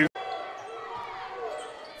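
Quiet live sound of a basketball game in a gym: a ball bouncing on the hardwood court, with faint voices behind it.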